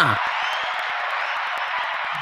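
Steady applause-like crowd noise, an even clatter with no voices over it.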